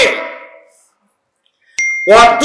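A man's voice through a public-address system ends a drawn-out phrase and dies away in its echo, leaving about a second of silence. Near the end comes a sharp click with a brief high bell ding from an on-screen subscribe-button animation.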